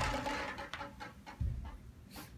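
Metal trash can clattering on the pavement after a crash: the crash dies away, then a few light knocks, the loudest about one and a half seconds in.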